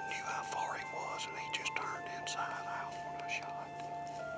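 A man speaking softly in a breathy near-whisper, over long held notes of background music.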